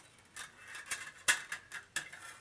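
A few light clicks and taps of thin metal being handled: a tin lid and a can opener set against each other on a wooden table. The loudest click comes just past a second in.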